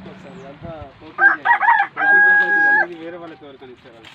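A rooster crowing: a few short broken notes starting about a second in, then one long held note that cuts off near the three-second mark. Voices talk quietly around it.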